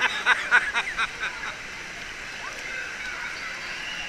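A woman laughing in quick, evenly spaced bursts for about the first second, then the steady wash of water in a crowded indoor waterpark pool.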